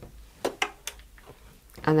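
A few brief, light clicks about half a second in, small handling sounds, against quiet room tone.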